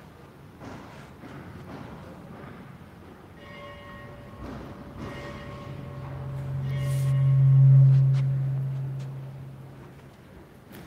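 Sustained ringing tones. A chord of steady higher notes comes in a few seconds in, then a deep hum swells to loud about three-quarters of the way through and fades away.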